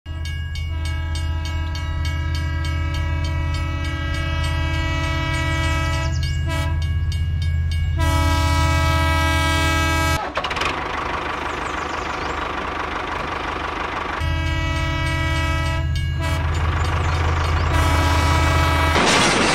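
A train horn blowing in long, sustained blasts, with a stretch of rumbling train noise about ten seconds in before the horn sounds again.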